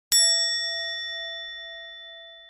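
A single bell-like chime struck once just after the start, ringing on with a clear tone and several overtones and fading slowly: an end-card sound effect.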